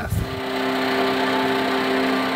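A fishing boat's motor running with a steady, even hum that holds one pitch throughout.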